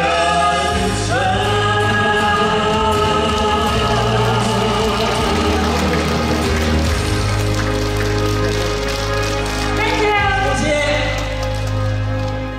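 A man and a woman singing a Cantopop duet over backing music, holding long sustained notes as the song closes.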